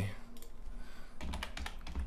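Typing on a computer keyboard: a few keystrokes just after the start, then a quicker run of keystrokes from about a second in.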